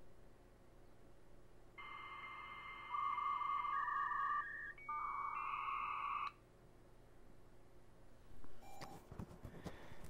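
US Robotics Courier V.Everything modem's speaker playing a dial-up handshake. A steady answer tone starts about two seconds in, followed by hissing carrier tones that shift pitch a few times and cut off abruptly after about four and a half seconds. This is the modems negotiating a 2,400 bps connection.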